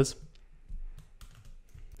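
A few faint computer keyboard keystrokes, pressing keys to start new lines of code.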